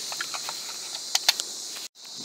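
Bolt-action rifle (Mossberg Patriot in 6.5 Creedmoor) being handled: a few light metallic clicks, then two sharper clicks a little over a second in as the loaded magazine is seated and the rifle readied. A steady high chirring of insects runs underneath.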